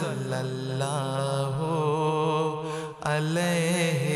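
A man singing a naat (Urdu devotional poem in praise of the Prophet) without instruments, holding long ornamented notes over a steady low drone, with a short break about three seconds in.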